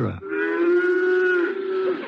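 A cow lowing: one long, steady moo of about a second and a half, a sound effect opening a ranch scene.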